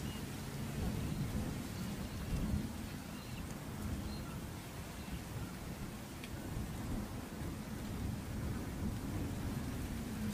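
Wind buffeting the microphone as an uneven low rumble, with a few faint, short, high bird calls above it.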